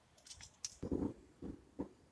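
Soft handling sounds while seeds are sown into a plastic module tray: a few small clicks and short rustles spread through two seconds, the fullest one about a second in.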